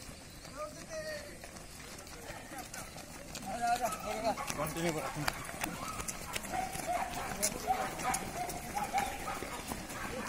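Footsteps of a large group of people jogging on a paved road, growing louder about three and a half seconds in as the runners come close, with indistinct voices of the group mixed in.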